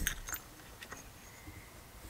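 A few faint, light metallic clicks and clinks, mostly in the first second, as a diesel fuel injector is handled and set down into its bore in a 12-valve Cummins cylinder head.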